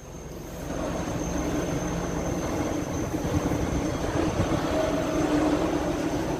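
A vehicle engine's rumble that swells in over the first second and then holds steady.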